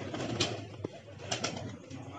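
Golden Bajre fancy pigeons cooing softly, with two short sharp clicks about half a second and a second and a third in.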